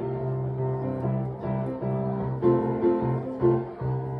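Solo piano being played: chords over a held low bass note, with new notes struck every half second or so.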